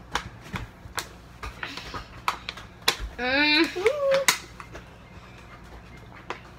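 Thin plastic water bottles clicking and crackling in a scatter of sharp, irregular ticks as they are tipped up and drunk from. About three seconds in comes a short, rising vocal whine.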